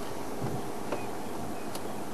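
Steady background hiss, like an outdoor broadcast's noise floor, with a few faint soft clicks.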